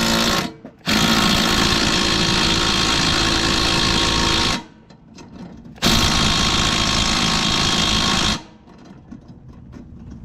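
Milwaukee M18 impact driver hammering in reverse on a lawnmower blade bolt, in three runs: a short one at the start, a long one of about three and a half seconds, then another of about two and a half seconds. The bolt is too tight for the driver to break loose.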